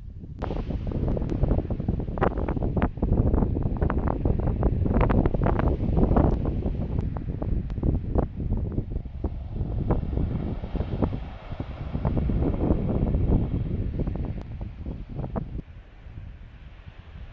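Wind buffeting the microphone: a loud, gusty rumble that cuts in just after the start and drops away near the end.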